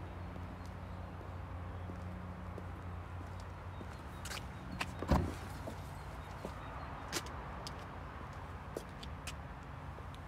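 BMW 330e saloon's boot lid being released and opened: a latch clunk about five seconds in, with a few lighter clicks around it and a couple more later, over a steady low hum.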